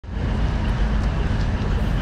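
Diesel train's power car running while stationary, a steady low rumble that fades in at the start.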